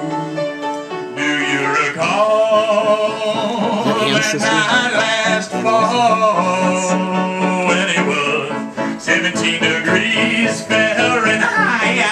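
Upright piano played with a man singing over it. For about the first second the piano sounds alone, then the voice comes in.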